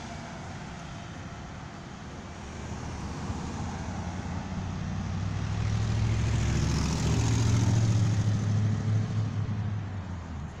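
A motor vehicle driving past: a low engine rumble with road noise that swells over several seconds, peaks about seven to eight seconds in, then fades.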